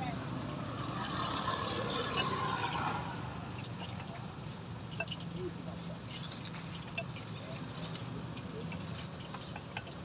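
Outdoor market stall ambience: indistinct background voices over a steady low hum, with light clicks and rustling in the second half.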